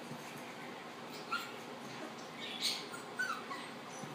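A puppy giving a few short, high-pitched yips and whimpers while play-fighting with an older dog: one about a second in, then a cluster a little past the middle.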